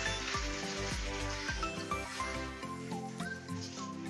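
Raw chicken pieces sizzling as they fry in hot oil in a wok, under light background music.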